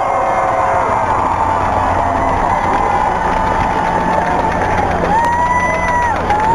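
Large crowd cheering, many voices shouting and whooping at once, with one held whoop near the end.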